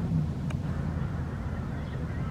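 A steady low engine hum, with one faint click about half a second in.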